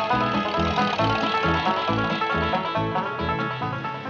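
Banjo-led bluegrass music with a steady, bouncing bass beat, growing a little quieter near the end.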